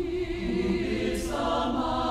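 Choral music: a choir singing long held notes that build into chords.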